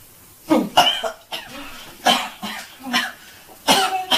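A person coughing several times in short, irregular bursts.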